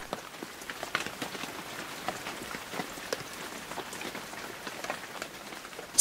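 Steady rain falling, an even hiss dotted with the small ticks of individual drops.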